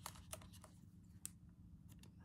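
Near silence: room tone with a few faint, short clicks from hands handling a cardboard strip and a pen on a journal.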